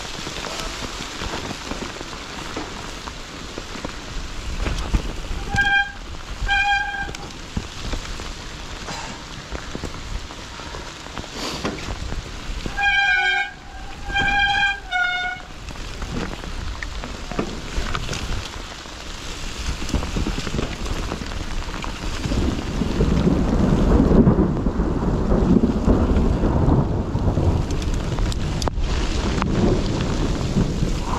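Nukeproof Mega mountain bike descending a wet, leaf-covered dirt trail: a steady rush of wind and tyre noise with low rumble, and a few short honking squeals around the middle, typical of wet disc brakes. The rumble grows louder and rougher in the last third.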